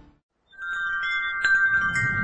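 Closing music fading out, a brief silence, then a logo jingle starting with several held, bell-like chime tones and a bright strike about a second and a half in.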